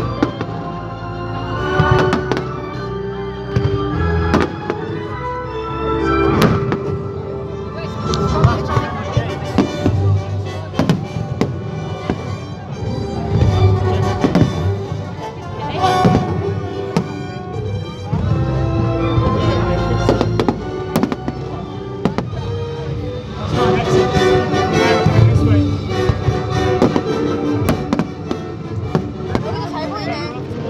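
A large aerial fireworks display bursting in many sharp, irregular bangs over loud music.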